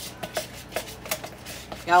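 A metal spoon stirring thick yogurt in a plastic tub, scraping and tapping the sides in a quick, uneven run of light clicks.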